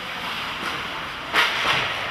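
Ice hockey rink noise: skate blades scraping the ice under a steady hiss, with one sharp crack of stick on puck a little over a second in as the rebound is shot.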